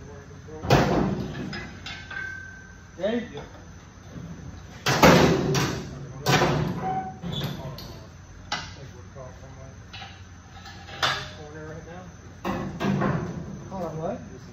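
Sheet-steel cab of a 1941 Chevrolet pickup, hanging from a hoist, clunking and banging against the chassis as it is shoved into place. The metal bangs come irregularly, with a short ring after each, and the loudest is about five seconds in.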